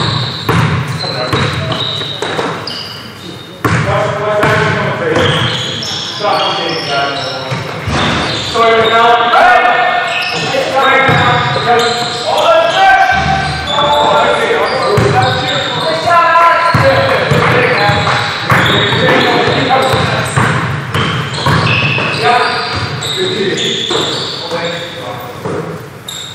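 Players' voices calling out during a basketball game, over a basketball being dribbled on a gym floor, in a large echoing gym.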